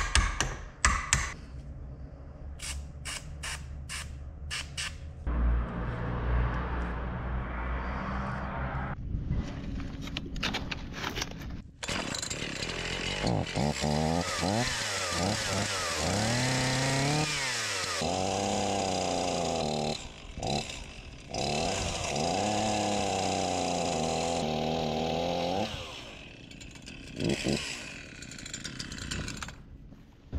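A hammer striking a screwdriver several times to free the seized sprocket at the tip of a chainsaw bar. Later a two-stroke chainsaw runs and is revved up and down several times.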